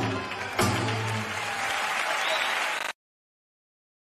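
Flamenco music ends on a final struck chord with a short ring, then a crowd applauds. All sound cuts off suddenly just before three seconds in.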